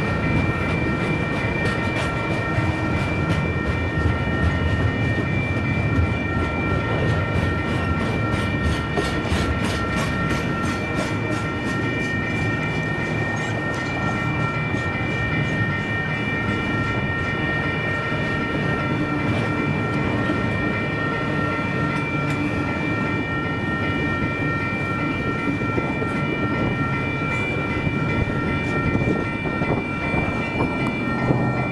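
Double-stack intermodal freight cars rolling past, with steel wheels rumbling and clacking over the rail joints. A steady, high ringing tone of several pitches sounds over it.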